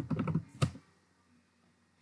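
A quick run of keystrokes on a computer keyboard during the first second, typing vim's save-and-quit command to close a merge commit message.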